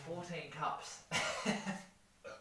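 A man coughing and clearing his throat, with short voiced sounds around a loud cough a little after a second in.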